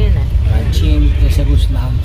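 Low, steady rumble of a passenger train carriage running along the track, heard from inside, with voices talking over it.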